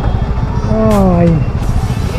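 Yamaha MT-15 motorcycle's single-cylinder engine running at low speed in slow traffic, a steady low rumble. About halfway through, a man calls out once, a drawn-out "aai" falling in pitch.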